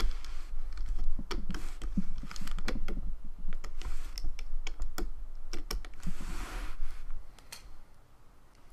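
Irregular clicking and tapping of rubber loom bands and the plastic Rainbow Loom's pins as a band bracelet is pulled off the loom, with a short rustle near the end.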